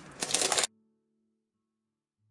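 Brief rustling and clicking of small decorations such as faux pearls being handled. A little over half a second in, it cuts off abruptly to near silence, leaving only a faint low steady tone.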